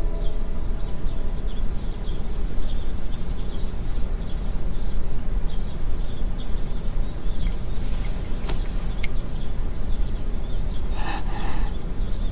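Steady rain ambience, an even rush heaviest in the low end, with small birds chirping high above it. A few light clicks come about eight seconds in, and a brief louder call comes near the end.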